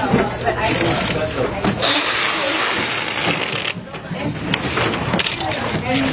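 Overlapping, indistinct voices of several people talking in a busy room, with a stretch of rustling noise lasting a little under two seconds in the middle.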